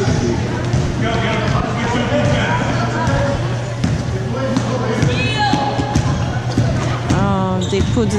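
A basketball being dribbled on a hardwood gym floor during a game, under constant spectators' chatter and voices in a large hall.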